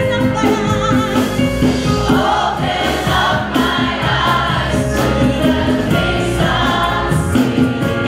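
Gospel choir and lead singers singing a worship song together over instrumental accompaniment with a steady beat.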